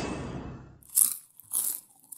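Intro logo sound effect: a swelling sound that fades out in the first second, followed by two short, crisp noise bursts about half a second apart.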